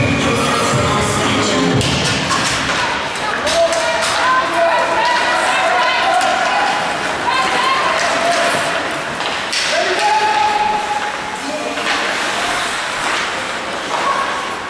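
Indistinct calling and shouting voices carry across an ice hockey rink, mixed with scattered knocks and clacks from sticks, puck and boards during play.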